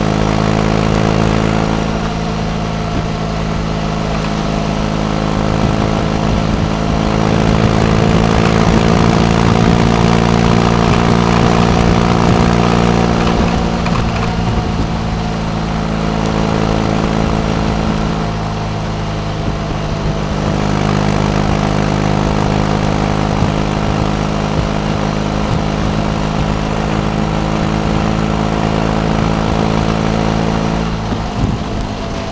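Motorcycle boxer-twin engine running steadily at cruising speed on the open road, with wind rush over the microphone. The engine note eases for a few seconds about halfway through, then picks up again.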